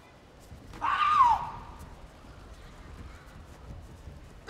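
A taekwondo fighter's kihap: one loud, sharp yell about a second in, lasting about half a second, its pitch rising briefly and then falling away.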